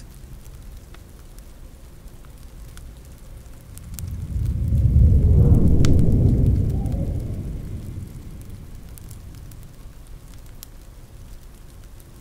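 Fireplace crackling with a low roll of thunder that swells about four seconds in and fades away over the next few seconds.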